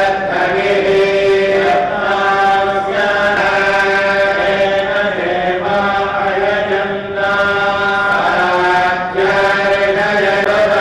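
Sanskrit mantras chanted in long, held notes that change pitch every second or two, as during the temple abhishekam bathing of the deity idols.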